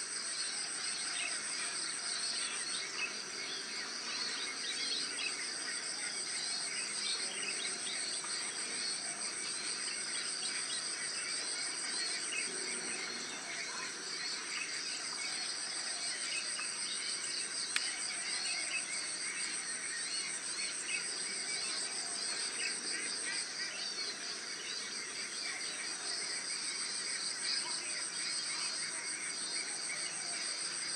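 Chorus of insects: a continuous high, shrill buzz that weakens and strengthens a few times, over a pulsing chirping trill, with scattered short bird chirps.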